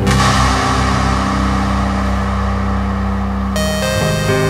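Background music with sustained steady notes. A loud hissing swell of noise enters at the start and dies away over about three and a half seconds.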